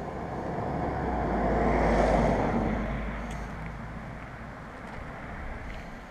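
A road vehicle passing by out of sight, its noise swelling to a peak about two seconds in and then fading away.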